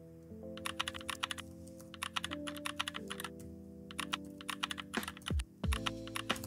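Typing on a computer keyboard: several quick bursts of key clicks, starting about half a second in, over background music with held notes.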